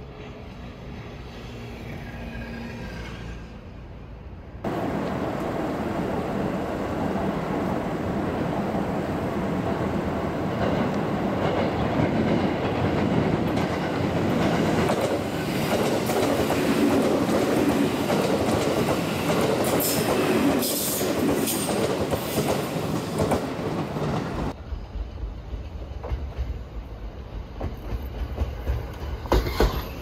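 Electric trains passing close by on the tracks. First a Haruka limited express runs past with a heavy rush of wheels on rail, with high-pitched squeals near the end of its pass. Then a JR West 323 series commuter train rolls by with sharp, rhythmic wheel clacks that grow louder toward the end.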